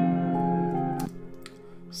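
Playback of a trap beat's melody, sustained synth pad chords, which stops abruptly about a second in and leaves a faint fading tail.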